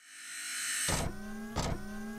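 Electronic sound effects of an animated logo intro: a whoosh that swells up, then a hit about a second in that leaves a held, slowly rising tone, and a second hit near the end.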